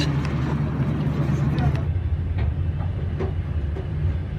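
Passenger train running, a steady low rumble heard from inside the carriage.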